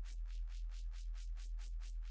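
Quietest band of a distorted synth bass, soloed with Bitwig's Loud Split: a steady low hum under a fast, even pulse of high hiss. What is left is the synth's noise layer and the processing artifacts.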